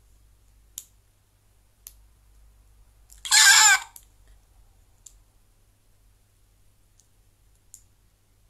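A few faint mouth clicks from a woman, and one short, loud, high-pitched mouth sound about three seconds in.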